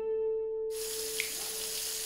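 Kitchen faucet running into a stainless sink, an even rushing hiss that starts about a third of the way in. Before and under it, a single held note of background music rings and fades.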